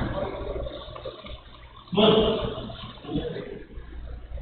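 A man's voice briefly, a short untranscribed murmur about two seconds in, over a low steady hum.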